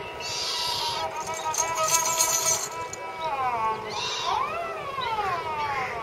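Ravanahatha, a Rajasthani bowed folk fiddle, bowed with steady held notes and a drone, then from about three seconds in the bowed melody slides up and down in pitch.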